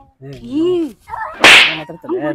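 A voice, then about one and a half seconds in a single loud, sharp crack-swish that dies away within half a second.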